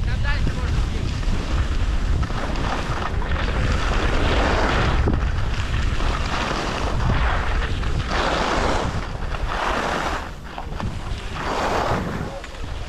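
Wind buffeting the microphone while skiing downhill fast, with swells of ski edges scraping across packed, chopped-up snow on each turn, about every one to two seconds.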